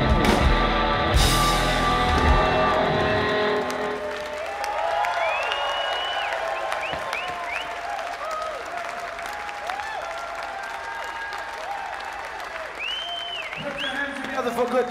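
A live band with drum kit and guitar plays the loud closing bars of a song, stopping about three and a half seconds in. Audience applause and cheering follow for the rest of the time.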